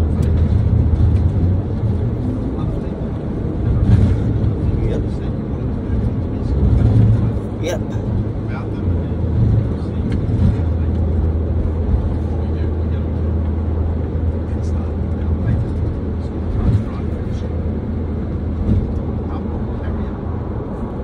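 Car interior road and engine noise heard from the back seat while driving: a steady low drone with a few light knocks and clicks.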